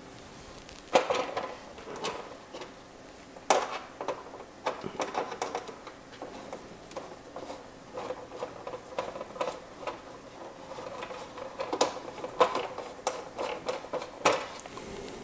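Hard plastic RC truck body and cabin parts clicking and knocking as they are handled and pressed together, with a few sharper knocks about a second in and near the end.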